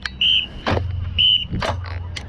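Three short, high whistle blasts about a second apart, alternating with sharp drum strikes: a marching band's start-up signals just before it begins to play.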